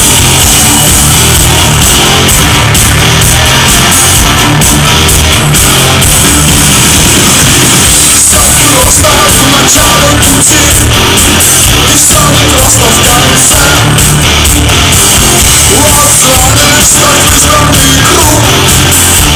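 Live rock band playing loud at a concert, heard from within the audience: distorted electric guitars, bass and drums. A man's singing voice comes in about eight seconds in.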